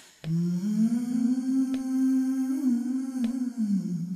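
Music: a woman's voice humming one long held note that rises slightly at the start and falls away near the end, over a soft click about every second and a half.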